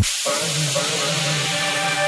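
Progressive house track in a breakdown: the kick drum and bass cut out abruptly at the start, leaving a steady wash of white-noise hiss with a few soft sustained synth tones coming in underneath.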